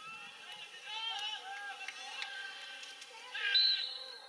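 Spectators shouting, with a run of short, high-pitched calls that grow louder, the loudest a little past three seconds in.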